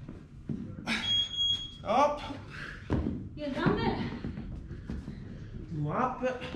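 Voices and short exclamations, with a couple of thuds about one and three seconds in and a brief high steady tone about a second in.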